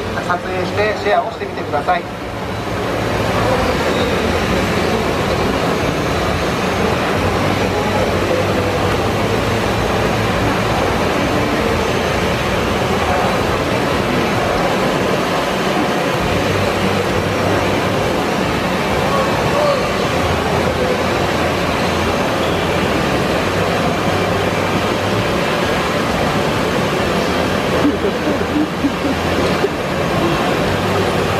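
Three DJI drones, a Mavic Pro, a Phantom 4 Pro and an Inspire 2, hovering together, their propellers making a loud, steady buzz. A voice is heard in the first two seconds, before the buzz settles in.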